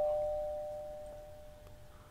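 Two-note doorbell chime ringing out, a higher note and a lower one, both fading away over the two seconds.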